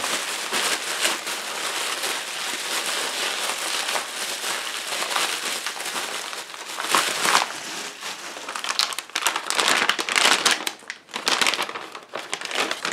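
Pink bubble wrap crinkling and crackling as it is handled and unwrapped by hand, with louder, sharper crackles about seven seconds in and again a couple of seconds later.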